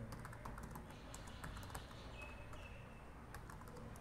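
Faint typing on a computer keyboard: an uneven run of key presses as a terminal command is entered.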